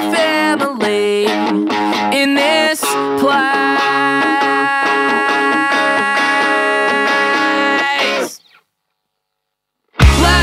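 Guitar rock music with distorted electric guitar. From about three seconds in, a held chord rings on; the music then cuts off abruptly, leaving about a second and a half of silence at the end.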